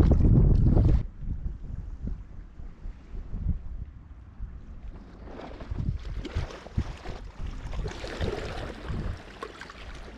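Wind buffeting the microphone, loud for the first second and then cutting to softer gusts, with small waves lapping against the rocky shore.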